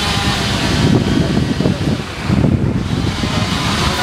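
Wind buffeting the microphone in irregular low gusts, over a steady background noise.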